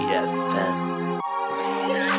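Hard trap beat instrumental with sustained, stacked chord notes that change about a second and a quarter in.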